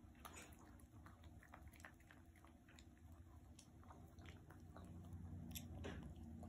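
Faint, irregular chewing and lapping clicks of a small Chihuahua eating soft ground beef kidney from a plate.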